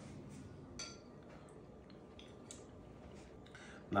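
Faint clinks and taps of a metal spoon against a ceramic serving bowl. One slightly louder clink rings briefly about a second in.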